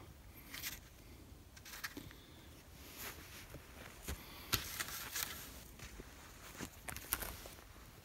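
Footsteps over dry grass and loose dirt, with scattered faint crackles and clicks as a shed elk antler is carried and handled.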